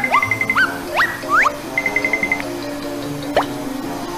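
Comic 'plop' sound effects laid over light background music: about five quick upward swoops, most in the first second and a half and one more past the three-second mark, plus two brief rapid trills. They stand for pimples being sucked out by a suction gadget.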